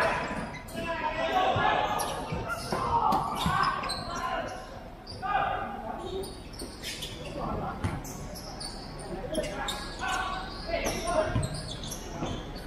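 Futsal ball being kicked and bouncing on the hard court, a string of sharp knocks at uneven intervals, with players shouting. Both echo in a large indoor hall.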